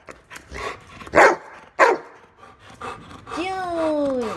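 Yellow Labrador retriever barking on cue when told to speak and say thank you: two loud single barks about half a second apart, around a second in, with a few softer ones after.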